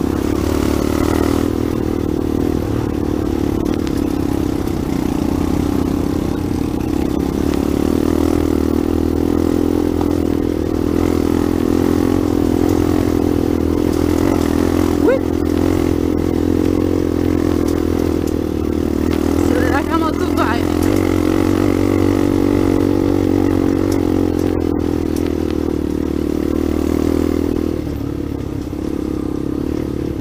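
Dirt bike engine running at a steady, even pace while under way on a trail, heard up close from the rider's own bike.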